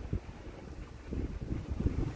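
Wind buffeting a handheld phone's microphone: an uneven low rumble with a few soft knocks.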